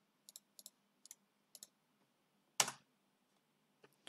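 Computer mouse and keyboard clicks while a command is copied and pasted: several faint clicks, mostly in quick pairs, then one louder single click about two and a half seconds in.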